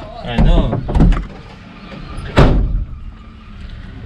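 A Tata Sumo's door slammed shut once, a single sharp bang about two and a half seconds in.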